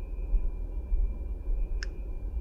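Low steady rumble with one short click near the end, as hands handle the shafts of an opened hydraulic piston pump.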